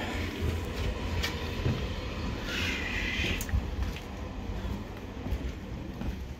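Low steady rumble of a train on a nearby track, with a brief high squeal about two and a half seconds in and a few sharp knocks on metal.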